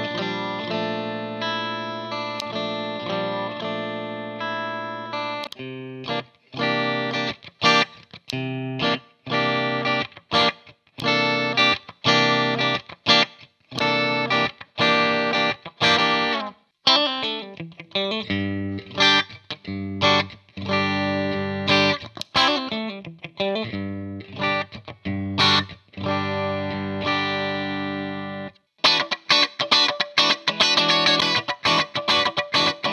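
Electric guitar with single-coil pickups played through Hughes & Kettner guitar amp heads, with gain and tone at 12 o'clock, recorded through a Two Notes Captor X load box with a speaker-cabinet impulse response. First a chord is held for about five seconds, then short chords are struck with gaps between them, then a busier run of notes and chords. Partway through, the sound switches from the Black Spirit 200's clean channel to the Spirit of Vintage, which is slightly dirtier and quieter.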